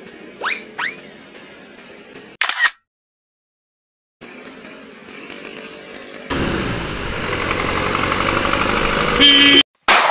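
Motorcycle and street traffic noise from a scooter ride, cut up with edits: two short rising whistles near the start, a brief loud burst, then a second or so of dead silence. About six seconds in the traffic and engine noise turns loud and stays steady, with a loud steady tone sounding briefly near the end.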